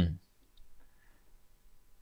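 A man's voice trails off at the start, then a quiet pause with a few faint, short clicks.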